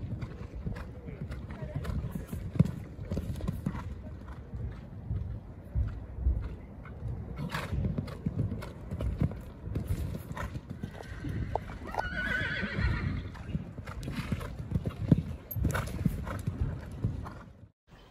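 Horses cantering on a sand arena, a continual run of dull hoofbeat thuds, with a short higher-pitched call about twelve seconds in.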